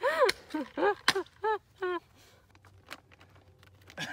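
A woman laughing, a string of short high-pitched ha-sounds over the first two seconds, then quiet outdoor background with a faint tap near three seconds in.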